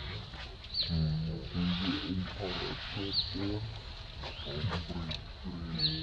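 Macaque calls: a string of short, low-pitched calls in quick succession, starting about a second in.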